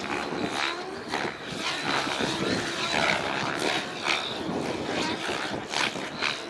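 Electric 700-size RC helicopter (Thunder Tiger Raptor G4 E720) flying 3D aerobatics at a distance. Its rotor blades swish and its motor whines, rising and falling as it manoeuvres, with a thin high whine that comes and goes.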